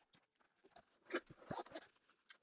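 Faint, scattered rustles and small clicks of hands handling the fabric cover of a folded portable solar panel.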